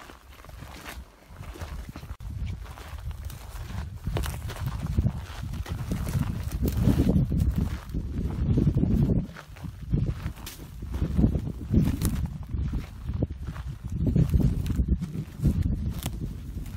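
Wind buffeting the microphone in irregular low rumbles, with footsteps crunching and brushing through dry sagebrush and twigs as the camera is carried low.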